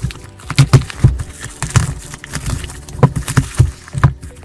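Bubble wrap and plastic packaging crinkling and crackling as it is handled and pulled open, in a quick irregular run of sharp crackles and rustles.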